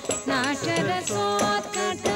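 Carnatic dance music: a singer's ornamented melody sliding and bending in pitch, then settling on steady held tones over the accompaniment, with bright metallic strikes keeping time.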